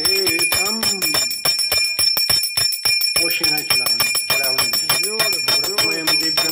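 Brass puja bell rung rapidly and continuously, with a steady high ringing, while a voice chants over it in the first second and again from about halfway.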